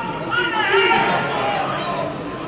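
Several voices talking and calling at once, with crowd chatter.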